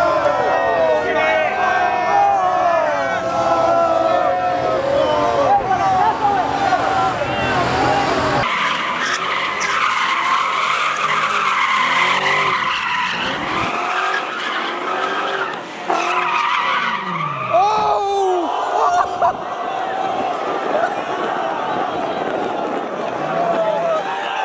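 Tyres squealing as a car spins donuts, the engine revving up and down in sweeps. It starts about eight seconds in, after a stretch of loud voices.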